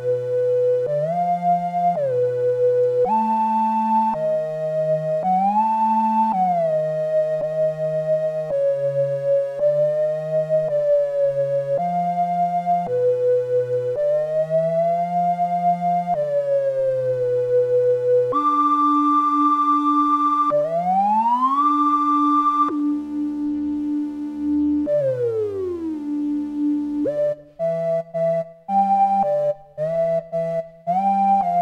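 Arturia Jupiter-8V software synthesizer playing a run of sustained test notes, each followed by a pitch-bend slide to the same pitch, to check that the bends land exactly in tune. In the second half come long smooth glides, one rising and one falling, and short notes with brief gaps near the end.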